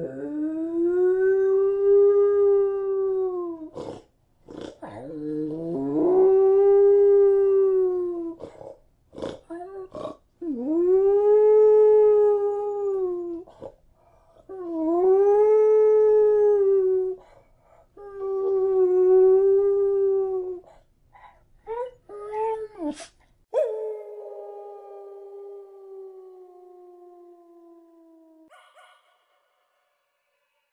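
A canine howling: about five long howls in a row, each about three seconds and arching up then down in pitch, with brief breaks between. These are followed by a few short yips and a final long howl that slides slowly down in pitch.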